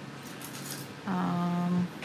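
A woman's voice holding one steady, level-pitched hum or drawn-out filler sound for under a second, starting about halfway through, after a second of quiet room tone.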